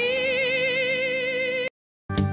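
Background music: one long note with vibrato that cuts off abruptly near the end, followed by a moment of silence.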